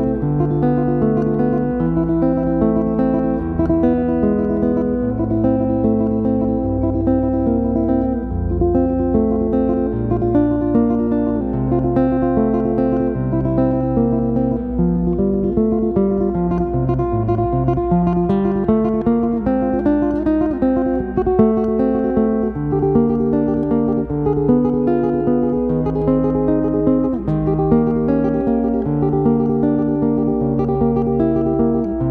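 Instrumental background music led by acoustic guitar: plucked notes over a low bass line, with a run of notes falling and then climbing again about halfway through.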